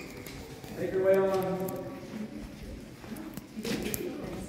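Footsteps walking along a walkway, with a person's voice speaking briefly about a second in.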